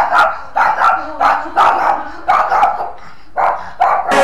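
Small fluffy white dog barking repeatedly, about two barks a second, with a brief pause about three seconds in.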